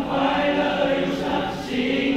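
A teenage boys' school choir singing a Chinese New Year song in parts, holding long notes in harmony.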